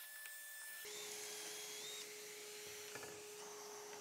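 Faint steady hum and hiss of workshop background, with a couple of light knocks as pine boards are lifted and set down at the pocket-hole jig.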